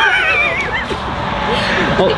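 A woman's high-pitched, wavering laugh, under a second long at the start, followed by low voices over a steady background hiss.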